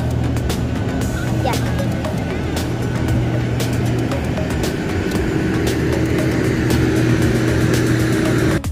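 Airport apron noise from jet aircraft: a steady low drone with a held whine, broken by scattered sharp clicks.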